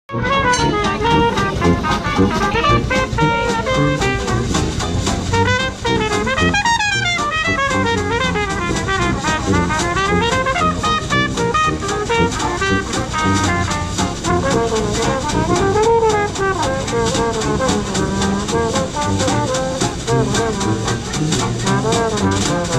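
Live Dixieland jazz band playing a lively tune: brass horns over a tuba bass line and a steady banjo and drum beat.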